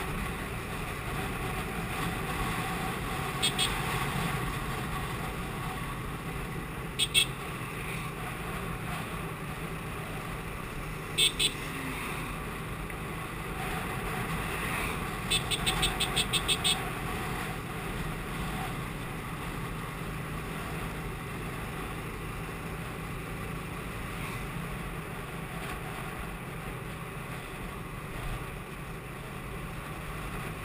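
TVS Apache RTR 180 motorcycle's single-cylinder engine running under steady wind rush on the microphone, with a horn giving short beeps: a pair of toots every few seconds, then a rapid string of about eight near the middle.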